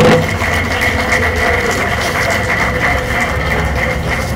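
Audience applauding, over a steady background hum.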